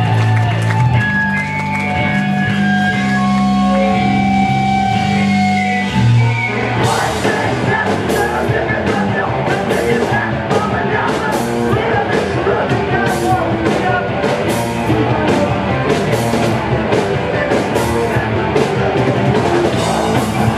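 Live hardcore punk band starting a song: for about seven seconds guitar and bass chords ring out, then the drums crash in and the full band plays fast and loud, with vocals.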